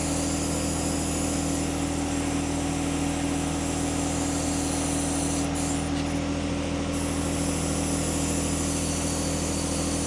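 Steady machine hum: a low drone made of several held tones, running unchanged.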